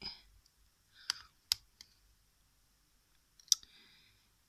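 Sharp plastic clicks and taps from a hinged plastic hair-chalk compact being handled: a handful of separate clicks, the loudest near the end.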